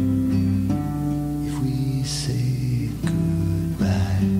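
Acoustic guitar playing a slow ballad, chords ringing and changing a few times, with a few light strums.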